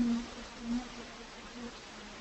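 A person's voice humming a closed-mouth 'mm' in three short stretches at one low, steady pitch.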